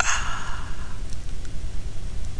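A sigh into the microphone, a breathy exhale that starts at once and fades out over about a second, over a steady low hum.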